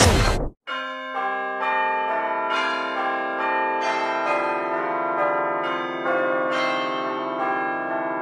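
Church bells ringing a peal, about two strikes a second, each bell ringing on under the next. Just before the bells start, a song cuts off abruptly half a second in.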